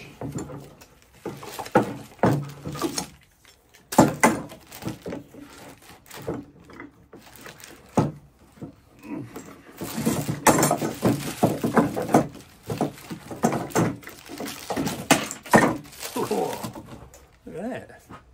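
Steel bar clamps being unscrewed and lifted off wooden boards, giving an irregular run of metallic clicks, rattles and wooden knocks. The sharpest knocks come about four seconds in and again from about ten to sixteen seconds in.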